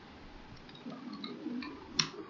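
Faint keystrokes on a computer keyboard as an IP address is typed, with one sharper key click near the end.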